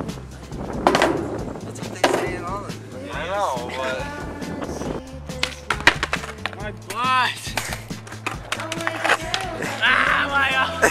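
Skateboard on asphalt, with several sharp board clacks and a fall onto the pavement, over pop-rock background music.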